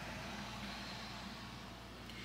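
Quiet room tone: a faint steady low hum under a soft, even hiss, with no distinct sounds.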